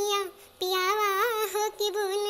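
A high-pitched voice singing a devotional bhajan unaccompanied, in long held notes that waver. A short breath about half a second in splits two phrases.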